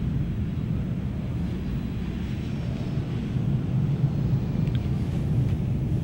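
Steady low rumble of background ambience in a film soundtrack's pause between lines, with a faint click about five seconds in.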